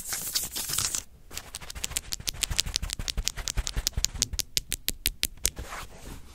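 Fingers scratching and tapping on paper taped to a wall, right up against a microphone: about a second of dense scratching, then a quick, even run of taps, about eight a second.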